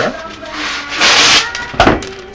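A sheet of wax paper rustling and crinkling as it is handled and spread over a foil cake pan: a loud crisp rustle about halfway through, then a short sharp crackle near the end.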